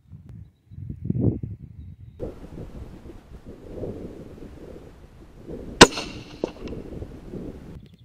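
A single shot from a .204 Ruger varmint rifle fitted with a sound moderator, a sharp crack about six seconds in with a short ring after it. A lower thud comes about a second in.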